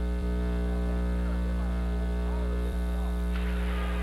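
Steady electrical mains hum with a buzzy stack of overtones on the radio broadcast audio while the play-by-play is off for a short break, with a small click about a quarter second in and another near three seconds.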